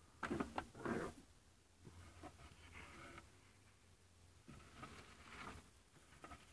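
Faint rustling and handling of old paper banknotes on a table, in a few short bursts, the loudest about a second in, over a steady low hum.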